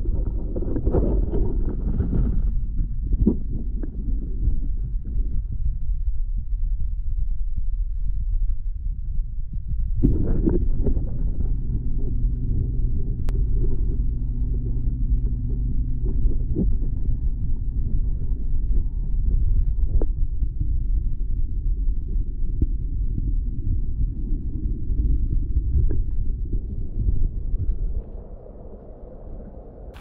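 Muffled low rumble of a camera recording underwater in a pond, with scattered knocks. From about ten seconds in a steady low hum runs under it, and the sound drops much quieter about two seconds before the end.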